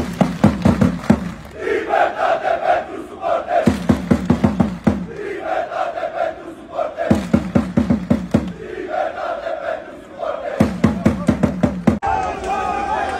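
Large crowd of football ultras chanting in unison, a repeating chant about every three and a half seconds. Each round opens with a low chanted line over a run of quick, sharp unison claps, followed by a higher sung line; it goes round about four times.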